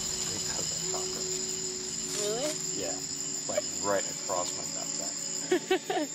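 Night-time insect chorus of crickets, a steady high trill throughout, with short rising and falling pitched calls over it that are loudest near the end.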